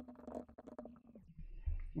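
Computer keyboard typing: a quick run of light key clicks over a faint steady low hum, stopping about a second and a half in.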